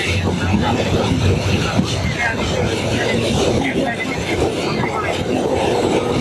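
Steady running noise of a moving Bangladesh Railway passenger train, heard from inside the carriage by an open window, with indistinct voices mixed in.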